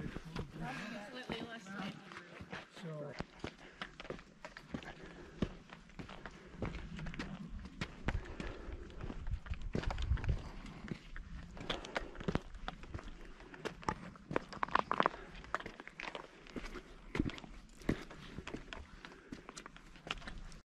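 Footsteps on bare sandstone with the tapping of a trekking pole, a string of short sharp clicks, and faint voices of other hikers now and then.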